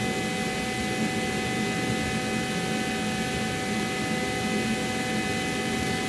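Steady machine hum and hiss with several constant whining tones, unchanging throughout.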